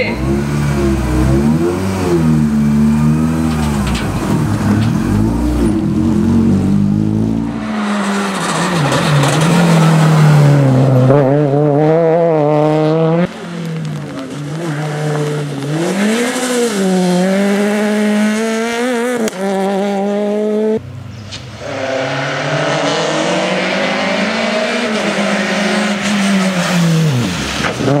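Peugeot 208 rally car's engine revving hard, its pitch climbing and dropping again and again through gear changes on a rally stage, heard in several short cut-together roadside passes.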